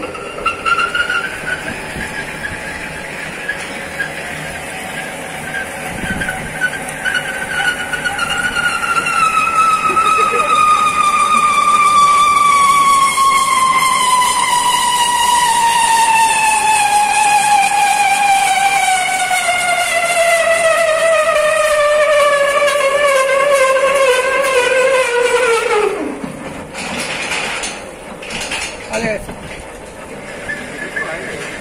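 Rebar threading machine cutting thread onto a TMT bar with its chaser die head: a loud whine that falls steadily in pitch for about 25 seconds, then stops abruptly. A few knocks and rattles follow near the end.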